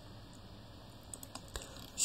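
A few faint clicks of computer controls about a second in, against quiet room hiss.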